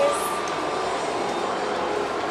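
Steady outdoor background roar with no clear source, carrying a faint high whine that fades about halfway through; a short voice sound right at the start.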